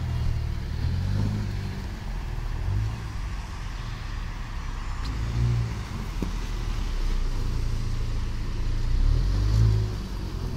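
Low, steady rumble of an idling vehicle engine, swelling a little several times.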